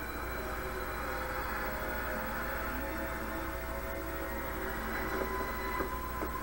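Steady droning rumble from a TV episode's soundtrack playing in the room, with a low constant hum beneath it.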